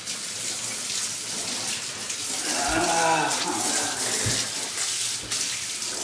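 Water running steadily from a handheld shower sprayer into a bathtub while a dog is bathed. About halfway through, a short low voice-like moan rises and falls over the water.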